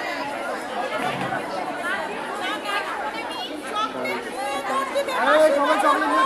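Chatter of many voices at once, children's and women's voices talking over one another in a crowd.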